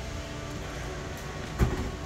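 A metal-cased ASIC Bitcoin miner is set down on a steel-topped workbench with a single thud about a second and a half in, over a steady background hum.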